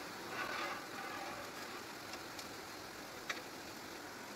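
Quiet stirring of milk in a pan on a gas stove with a ladle, over a faint steady hiss, with one sharp click about three seconds in.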